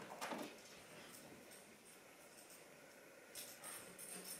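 Near silence: room tone, with one faint short knock about a quarter second in and faint rustling near the end.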